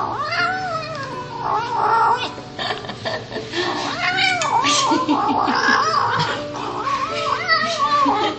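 Kitten making a string of short, rising-and-falling growling meows as it eats kibble, the calls coming quicker in the middle: angry food-guarding while a hand strokes it.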